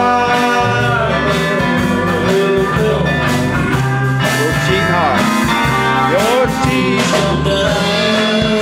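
Live country band playing: guitars, drums and pedal steel guitar, with sliding notes swooping up and down about five and six seconds in.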